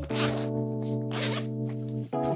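Zipper on a JanSport backpack being unzipped in several short pulls, over steady background music.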